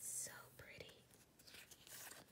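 Faint, quiet whispering under the breath, with light rustling of paper sticker sheets being shuffled by hand.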